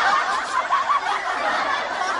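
Canned laughter: many voices snickering and chuckling together, slowly fading.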